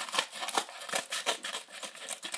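A mailed package being opened by hand: a quick, uneven run of crinkling, rustling and small clicks.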